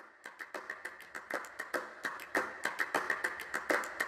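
Metal cutlery clinking in a quick, irregular run of light clicks as it is set out from a tray onto tables.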